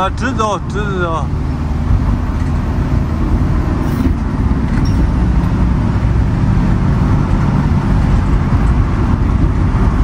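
Cabin noise of a Ford Transit van driving at highway speed: a steady engine drone under constant tyre and road noise. A voice speaks briefly in the first second.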